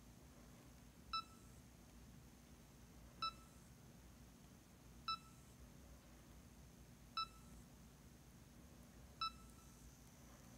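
Blaze EZ player sounding five short electronic beeps, one about every two seconds, while it builds its web radio channel list. It is the device's busy signal while it works.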